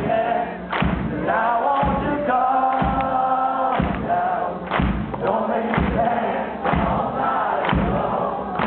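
Live punk-rock band playing in a club, with a heavy drum hit about once a second under held guitar chords and singing voices.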